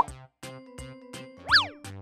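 Light children's background music with a regular beat. A sharp click comes right at the start, and about one and a half seconds in a sound effect glides quickly up in pitch and back down.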